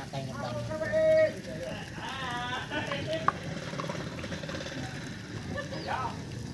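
A few brief, indistinct vocal sounds over a steady low background.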